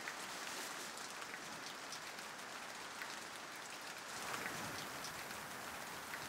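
Steady rain falling, with a few faint knocks of split firewood logs being gathered from a woodpile.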